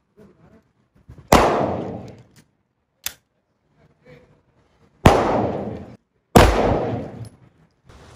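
Three pistol shots, the first about a second in and the last two close together near the end, each with a long echo trailing off for most of a second; a shorter, sharper crack comes between the first two.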